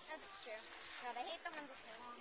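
Faint background voices of people talking, with no clear words.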